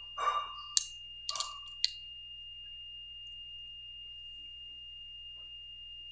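Two sharp computer mouse clicks about a second apart, each just after a softer short rustle, as playback is started; then only a steady faint high whine and low hum.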